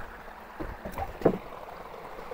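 Stream water rushing steadily through a bamboo fish trap. About halfway through come a few short splashes and knocks, the loudest a little past a second in, as fish are put into a plastic bucket of water.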